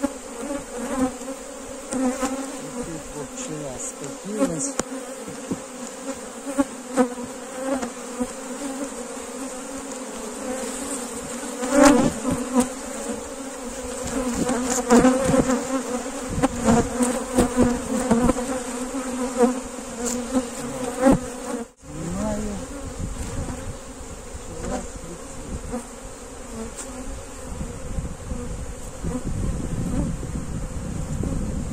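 Honeybees buzzing around an open beehive, a steady hum with scattered knocks and clicks over it that are busiest in the middle; the sound breaks off for an instant about two-thirds of the way through.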